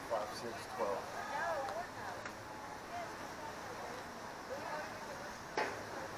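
Faint, distant voices calling across an open field, with one sharp knock near the end.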